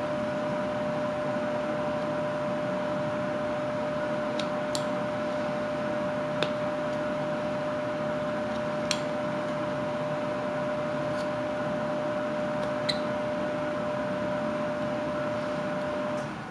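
A steady mechanical hum with a constant tone, and over it a few faint, sharp clicks from a carving knife cutting into the wooden figure.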